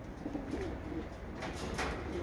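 Domestic racing pigeons cooing softly, a few low coos about half a second in.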